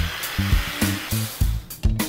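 Cordless drill spinning a small bit through half-inch plywood to bore a pilot hole, with the motor cutting off near the end. Background music with a steady beat plays under it.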